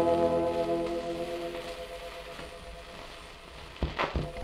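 The last held chord of a 78 rpm shellac record (tenor with salon orchestra) dies away. It leaves the disc's surface hiss and crackle, which slowly fades. A couple of sharp clicks come near the end.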